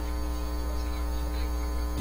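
Steady electrical mains hum in the recording: a low, unchanging drone with a thin buzzy edge.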